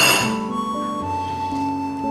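A porcelain coffee cup set down with one sharp clink right at the start, ringing briefly. Underneath, background music carries a slow melody of held notes.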